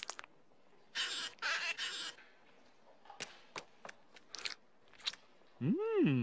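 Cartoon sound effects of a finger scooping into a jar of petroleum jelly: soft wet squishes about a second in, then scattered small clicks. Near the end comes a short vocal sound that rises and then falls in pitch.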